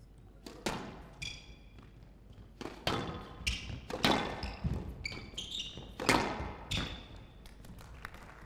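Squash rally on a glass court: the ball gives sharp knocks off rackets and walls, several times over, with short high squeaks of shoes on the court floor between the hits.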